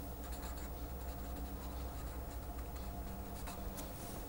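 Felt-tip marker drawing lines and writing on paper: faint scratchy strokes over a steady low hum.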